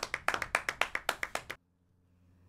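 Hand clapping: a quick run of sharp claps, about seven or eight a second, that cuts off abruptly about one and a half seconds in.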